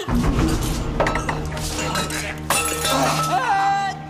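Film soundtrack of a magic spell taking effect: a sudden loud burst over a steady low music drone, with glassy clinking and gliding, drawn-out cries.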